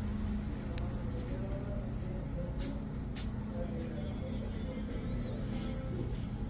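Steady low background hum with faint, indistinct voices, and a short high chirp about five seconds in.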